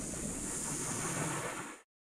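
Steady rushing ambient noise that fades out quickly and ends in silence just before the end.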